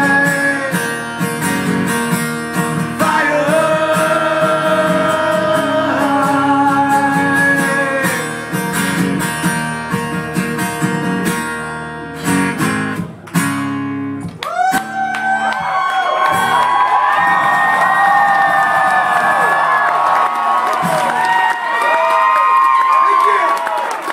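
Strummed acoustic guitar under long held sung notes, ending about 13 seconds in. From about a second later a crowd cheers and shouts, with whoops and whistles.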